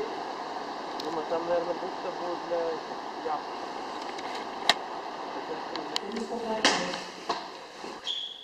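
Steady outdoor noise with people's voices faintly in the background and a few sharp clicks.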